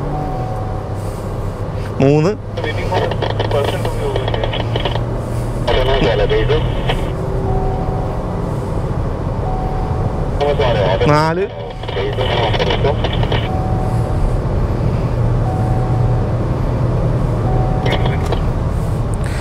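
MG Astor's engine heard from inside the cabin, pulling hard around a race circuit, with its note changing sharply twice, about two seconds in and again about eleven seconds in.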